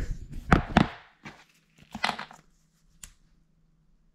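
A few sharp clacks and scuffs of a laminate floor plank and the camera being handled and set down on a laminate floor, loudest in the first second, with two more knocks about two and three seconds in.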